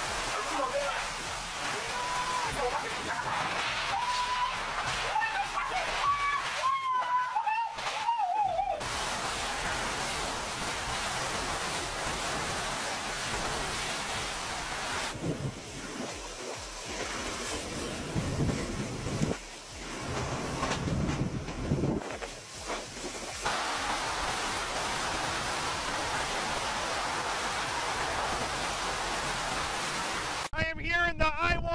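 Hurricane-force wind and driving rain rushing against a phone microphone, a dense steady noise. For the first nine seconds a wavering high whistle-like tone rides over it, and the noise shifts and dips briefly a few times further on.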